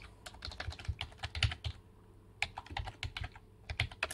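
Typing on a computer keyboard: two quick runs of keystrokes with a short pause between them, as a web address is entered.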